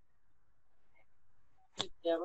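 Near silence with faint room tone, broken near the end by one short, sharp click.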